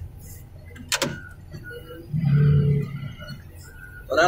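Diesel engine of a heavy machine with a hydraulic arm running as it drives, with a sharp metallic click about a second in and the engine getting louder under load for a moment around the middle.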